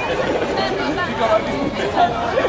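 Several people talking and chattering over one another, voices overlapping.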